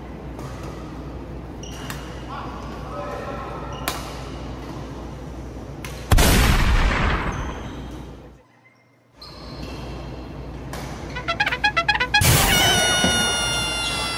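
Shuttlecock hits and shoe noises echo faintly in a large sports hall for about six seconds. Then an edited-in stinger plays: a sudden loud crash that fades over two seconds, a moment of dead silence, a rapid stuttering effect, and a loud held brass-like chord near the end.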